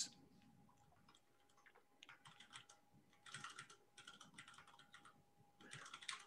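Faint keystrokes on a computer keyboard, in three short runs of typing, over a faint steady tone.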